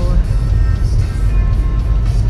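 Steady low road and engine rumble inside the cabin of a moving car, with music playing quietly on the car radio.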